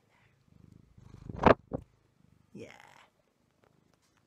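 Black domestic cat purring close to the microphone as a low, pulsing rumble, with a sharp loud knock about a second and a half in as it bumps against the phone.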